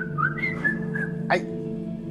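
A man's thin, high-pitched whimpers of pain in a few short wavering squeaks, then a sharp exclamation about a second in. Under them, background music holds a steady low chord.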